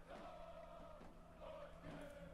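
Near silence: faint room tone in a pause between the commentator's words.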